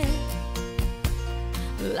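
Country ballad's backing band playing between sung lines: held chords over a steady bass with a few sharp drum beats. The singing comes back in at the very end.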